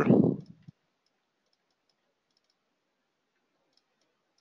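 A voice trails off, then faint, scattered computer mouse clicks over near silence.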